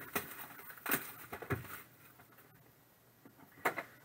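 Plastic shrink wrap being torn and crinkled off a cardboard trading card hobby box: a few short crackling rustles in the first two seconds, then quiet, with one more brief rustle near the end.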